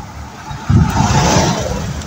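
An SUV passing close by. Its engine and tyre noise swell suddenly about two-thirds of a second in into a loud low rumble with a rushing hiss, then ease off.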